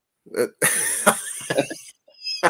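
A man gives a short 'uh', then a harsh, noisy cough lasting just over a second that fades out.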